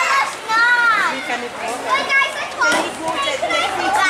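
Several high-pitched girls' voices shouting and calling out over one another in long, arching calls.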